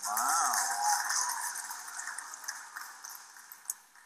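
The closing moment of a synagogue service recording played back through a video call. A short wavering note sounds in the first half-second, then a noisy tail fades away steadily.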